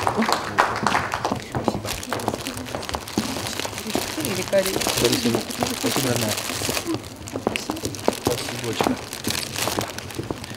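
Indistinct voices close by, with the crinkling and rustling of bouquet wrapping as flowers are handed over.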